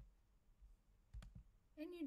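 Two quiet computer mouse clicks close together, about a second in, over near silence.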